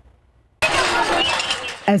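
A sudden loud burst of scuffle noise, clattering with shouting voices mixed in, cutting in abruptly about half a second in.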